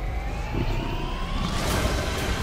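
Film trailer sound effect: a slowly rising pitched tone with overtones over a low rumble, building steadily.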